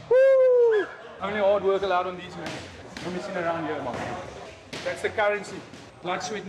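A man's loud, high, drawn-out shout that falls away at the end. Voices and a few sharp smacks of gloved punches landing on focus mitts follow.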